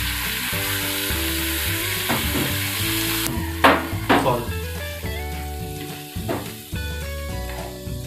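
Ground beef sizzling in a hot oiled wok as it is stirred and broken up with a spatula, with two sharp strokes of the spatula against the pan about four seconds in. The sizzle is loudest at first, then dies down after about three seconds.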